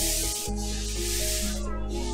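A broom sweeping a tiled floor: two long scratchy strokes of the bristles over the tiles, under background music with steady held notes.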